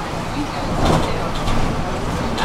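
Running noise inside a moving city bus: a steady engine and road rumble with tyre hiss from the wet road. Two short louder swells come about a second in and again a little later.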